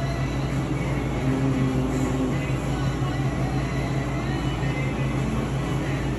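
A steady low machinery hum fills the room, with faint background music over it.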